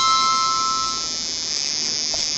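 Harmonica holding its last chord, which fades out about a second in, leaving a steady high hiss.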